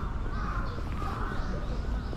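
Crow cawing, a run of several harsh caws about every half second, over a steady low background rumble.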